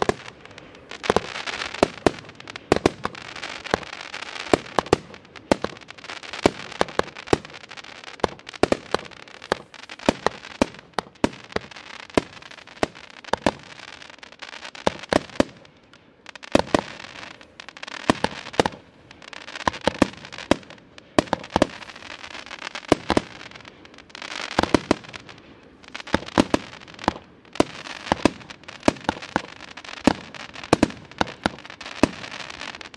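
A 2-inch, 100-shot fireworks cake firing continuously: sharp launch reports and shell breaks come one after another, about two a second. Dense crackling from the crackle-star breaks fills long stretches between the shots.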